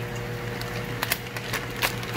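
Plastic fish shipping bag crinkling in hands as it is opened: a few short crackles about a second in and near the end, over a steady low hum.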